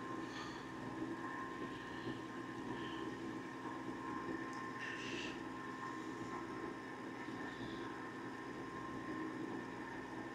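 Steady hum of a CO2 laser engraver and its fume filter box running during an engraving pass, with a few brief, faint higher whirs as the laser head moves.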